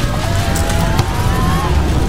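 Loud rushing wind with a deep rumble and a wavering whistling tone, a gale sound effect for a magic portal opening, over music.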